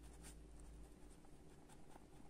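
Pen writing faintly on lined notebook paper in short scratchy strokes as a couple of words are written out.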